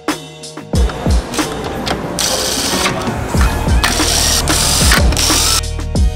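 A cordless power driver running on a fastener in several short bursts from about two seconds in, over background music with a steady drum beat.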